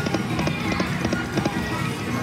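Double Blessings penny video slot machine playing its reel-spin music, with a quick run of ticks, about four or five a second, as the reels spin and come to a stop.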